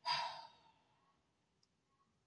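A short sigh, a breath let out for about half a second, then near silence.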